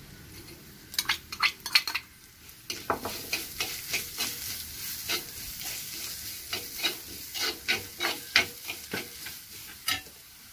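Steel spoon stirring and scraping in an earthenware clay pot, with frequent sharp clicks against the pot wall. A sizzle of frying food sets in underneath about two seconds in.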